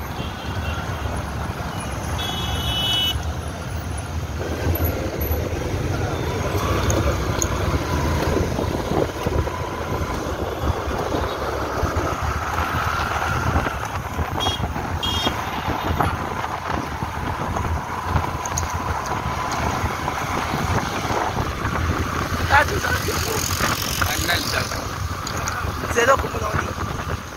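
Motorcycle engine running and wind buffeting the microphone while riding through street traffic, a steady low rumble throughout. There is a brief high-pitched beep about two to three seconds in.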